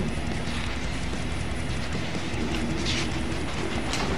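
Steady low rumbling background noise, with a short rustle of paper about three seconds in as a sketchbook page is turned.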